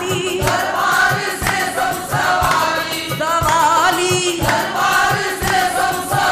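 Qawwali: a group of male voices singing together in wavering, ornamented lines over a steady drum beat of about two strokes a second.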